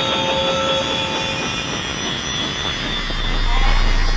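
A break in an electronic track filled with a loud rushing noise like a jet or blast, with a few faint steady tones over it. A deep bass rumble swells in about three seconds in.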